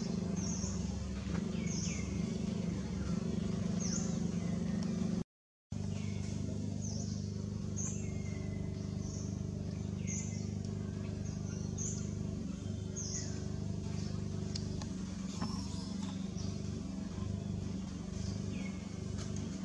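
Birds calling over and over, a short chirp falling in pitch about once a second, over a steady low hum. The sound cuts out briefly about five seconds in.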